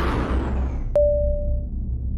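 Title-card sound design: a fading whoosh over a steady low drone, then a sharp hit about a second in that rings on one tone for about half a second.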